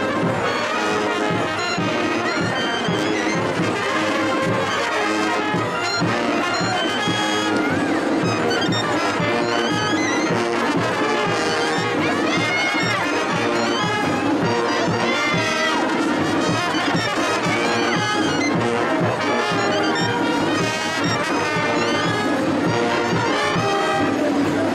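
Carnival brass band playing a lively dance tune for the Gilles, trumpets and trombones in the lead over a steady beat.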